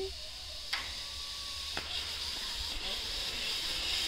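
Zip line trolley running along the steel cable as the rider comes in: a steady hiss that grows louder as it nears, with two faint clicks in the first two seconds.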